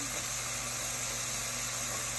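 Eggplant slices and onion frying in hot olive oil in a stainless saucepan: a steady, even sizzling hiss with a faint low hum underneath.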